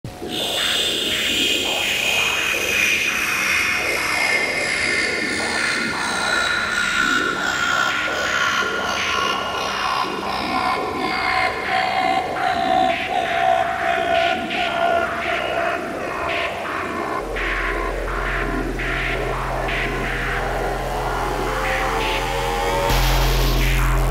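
Dark midtempo electronic music intro made on synthesizers: high synth tones sweep slowly downward over a dense texture of short clicks. A steady deep bass drone comes in about two-thirds of the way through and gets louder near the end.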